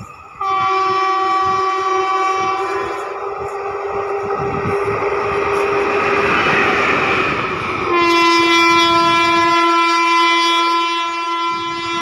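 WAP-4 electric locomotive sounding a long steady horn blast as it approaches, then running past with wheels rumbling and clattering on the rails. A second long horn blast comes a little lower in pitch as it moves away.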